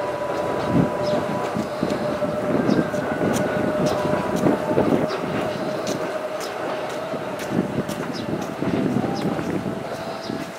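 A freight train of Koki container flatcars rolling steadily across a railway viaduct. The wheels rumble, with rapid irregular clicks, and a steady high tone runs through it.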